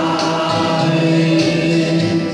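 A Christian song sung by a choir, its voices holding long sustained notes over musical accompaniment.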